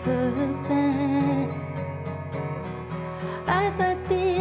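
A woman singing a slow song live, accompanying herself on a strummed acoustic guitar. There is a sung phrase near the start, guitar alone for a stretch in the middle, and the voice comes back near the end.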